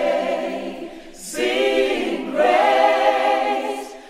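Choir singing a cappella in long held chords, a sung 'Amen': one chord carries over, fades about a second in, and new chords enter about a second and a half and two and a half seconds in.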